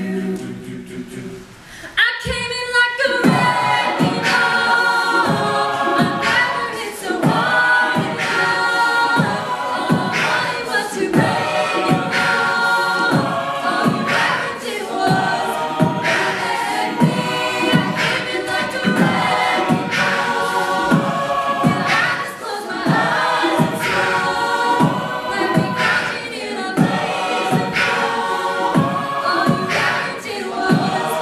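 Mixed-voice a cappella group singing full sustained harmonies with no clear lyrics, over vocal percussion keeping a steady beat of about two hits a second. The sound dips briefly about a second in, and the full group comes back in about two seconds in.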